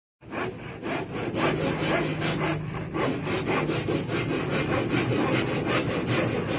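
Handsaw cutting plywood formwork in quick, even back-and-forth strokes, about four or five a second.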